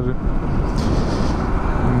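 Benelli Leoncino 800 Trail motorcycle being ridden slowly down a steep descent: steady wind rush on the microphone over the bike's low running noise, with a brief rise in hiss about a second in.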